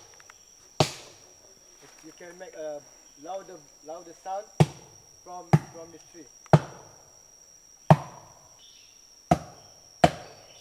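A fallen branch struck against the trunk of a buttressed rainforest tree, which acts like a drum. There are six hollow knocks: one alone, then after a pause five more about a second apart. A steady high insect drone runs underneath.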